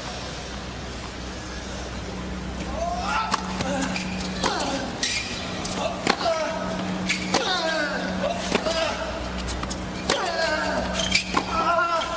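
Tennis rally on a hard court: racket strikes on the ball about once a second, starting about three seconds in, each followed by a player's loud grunt that falls in pitch.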